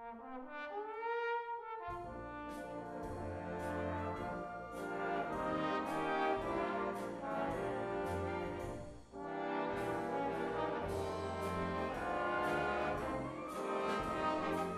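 Solo trombones play a rising phrase on their own, then a full wind band comes in with them about two seconds in, with a brief break about nine seconds in.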